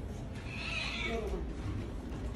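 A cat meows once, a call of about a second that drops in pitch at its end, over a steady low hum.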